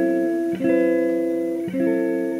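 Background music of plucked guitar chords, each ringing out and fading, with a new chord struck about half a second in and another near the end.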